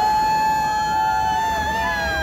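A rider's long, high scream, held on one pitch for over two seconds, with a second voice overlapping near the end.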